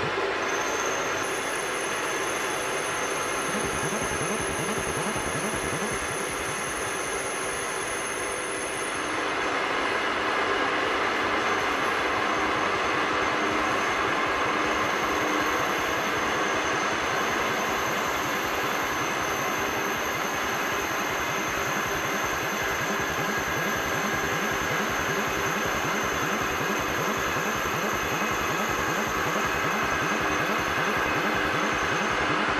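Benchtop drill press running and drilling steel: a steady motor and cutting noise with a regular low thump several times a second. It grows a little louder and brighter about nine seconds in.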